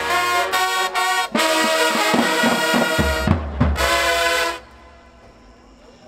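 Marching band playing: trumpets, trombones and low brass over regular drum strikes, building to heavy low bass-drum hits and a final chord that cuts off about four and a half seconds in.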